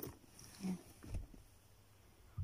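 Faint handling of small gift items: a sharp click at the start and a low thump a little after a second in.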